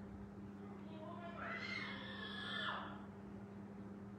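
A single long, drawn-out call in the background, lasting nearly two seconds. It rises in pitch, holds, then falls, over a steady low hum.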